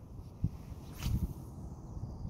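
Low knocks and rumble from fishing gear being handled in a boat, with a sharp click about half a second in and a short hiss about a second in.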